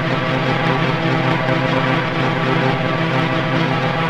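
Dark experimental electronic music: a dense cluster of sustained synthesized orchestral tones held as a steady drone under a layer of noisy hiss.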